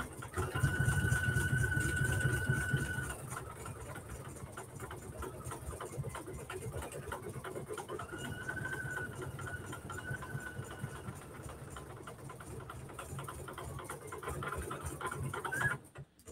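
PFAFF embroidery machine stitching out a design: a fast, steady patter of needle strokes, with a high whine that comes in twice as the hoop is driven. The stitching stops suddenly just before the end.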